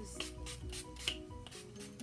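Pump spray bottle of e.l.f. hydrating coconut face mist sprayed again and again, a rapid series of short hisses, over soft background music.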